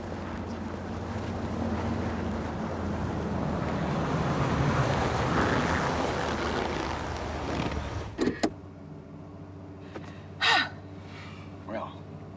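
An old full-size SUV's engine and tyres, getting louder as it approaches until about five seconds in, then cut off suddenly with a couple of clicks just past eight seconds. A quieter steady hum follows, with a short vocal sound at about ten and a half seconds.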